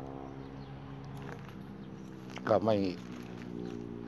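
A steady low droning hum with several even overtones, unchanging throughout, with a short spoken word about two and a half seconds in.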